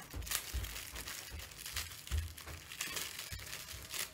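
Crinkly snack packaging being pulled open by hand to get at a small wrapped cake, an irregular run of crackles and rustles.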